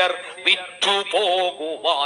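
A single voice reciting a Malayalam poem in a sung, melodic kavitha style, its pitch bending through drawn-out syllables.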